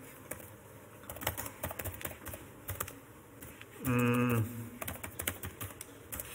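Typing on a computer keyboard: a run of irregular key clicks as a short terminal command is entered. A man makes one brief voiced sound about four seconds in.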